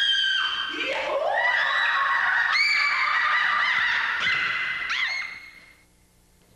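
Bonobo giving a run of high-pitched calls that overlap one another, each rising quickly and then held steady; they fade out near the end.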